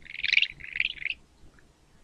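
Recorded anteater call played from a computer: three short, high chirping bursts in about the first second, then quiet.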